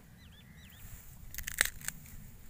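Several sharp snaps and crackles in quick succession about one and a half seconds in, as leafy carrot tops are twisted and broken off by hand. Two faint bird chirps near the start.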